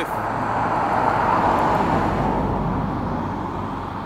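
A motor vehicle passing by on a road, its tyre and engine noise swelling and then fading away.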